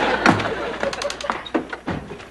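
Studio audience laughter dying away, under a run of quick, irregular sharp clicks and knocks from footsteps and a tray of glassware being carried off.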